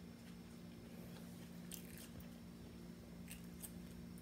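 Faint close-up sounds of a person chewing a sub sandwich, with a few soft wet mouth clicks and smacks, the clearest about halfway through and two more near the end. A steady low hum runs underneath.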